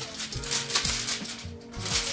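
Aluminium foil crinkling and crackling as a sheet is handled and pushed through a palette's thumb hole, over background music with a steady bass line.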